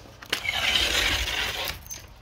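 Sliding glass patio door being pulled open along its track: a click, then a smooth rolling slide of over a second that ends in a second click.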